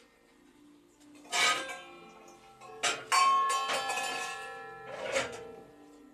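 Metal communion vessels knocking together and ringing as they are handled: about four clinks, the loudest a little past the middle, whose ring fades slowly over about two seconds.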